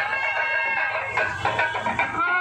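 Loud music on reed wind instruments playing held, wavering high notes.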